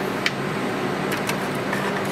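Steady drone of ventilation fans with a low hum, with a few light clicks.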